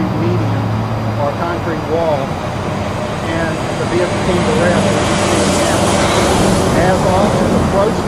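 A man speaking, over a steady low hum of idling vehicles.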